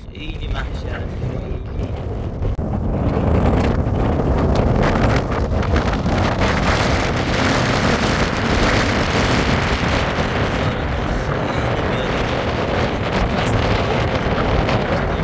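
Wind buffeting the microphone: a loud, steady rushing noise with a heavy low rumble that grows louder about two to three seconds in and stays strong.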